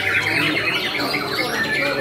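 Several caged white-rumped shamas (murai batu) singing at once in a dense run of fast trills and whistles, over a steady crowd murmur.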